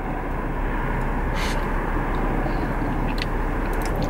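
Steady vehicle rumble and hiss heard from inside a car, with no speech.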